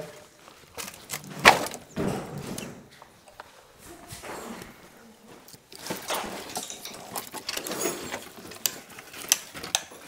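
Sticks of dry firewood knocking and clattering against each other as they are pulled from a woodpile. There are irregular sharp knocks, the loudest about one and a half seconds in.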